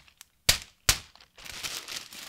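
A sheet of baking paper being flicked twice to shake the last flour into a glass mixing bowl: two sharp clicks about half a second apart, then paper crinkling as it is lifted away.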